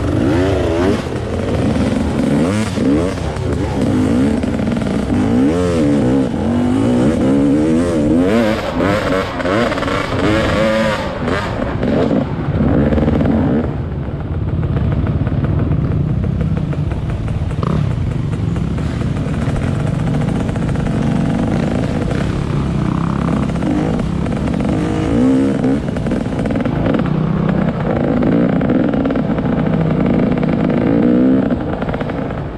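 Off-road dirt bike engine heard close up, its pitch rising and falling with repeated throttle bursts for the first twelve seconds or so, then running more evenly.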